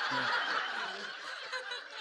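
Audience laughter, a dense even wash of many people laughing that eases off slightly toward the end.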